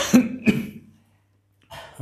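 A man clearing his throat: two short, rough bursts close together within the first second.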